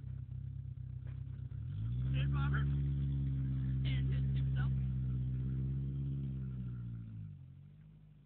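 Mazda B2300 pickup's four-cylinder engine idling, then revving up about two seconds in as the truck pulls away and drives past. The revs hold steady for a few seconds, then drop and fade as it moves off.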